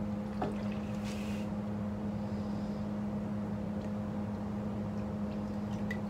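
Steady low machine hum, unchanging throughout, with a brief faint hiss about a second in.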